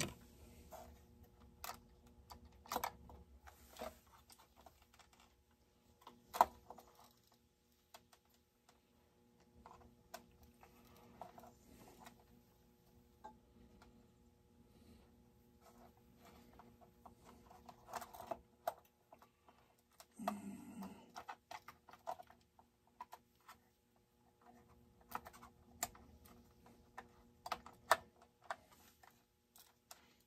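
Faint, irregular clicks and light rattles of small plastic and metal parts handled by hand on a workbench: a chainsaw being worked on around its carburetor, with a few sharper clicks among them.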